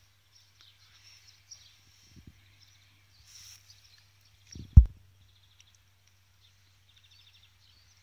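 Quiet garden ambience with faint high chirping trills, twice in short rapid runs, over a faint steady low hum. A single dull low thump, the loudest sound, comes near the middle.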